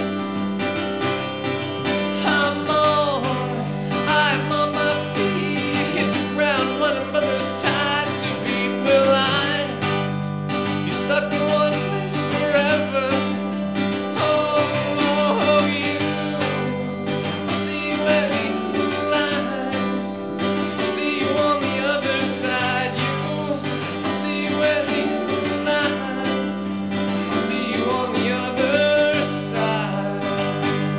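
A man singing live while strumming an acoustic guitar, a solo singer-songwriter performance.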